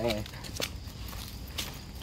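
Footsteps of people walking on a sandy dirt trail scattered with dry leaves: a few soft steps, with short sharp scuffs about half a second in and again near a second and a half.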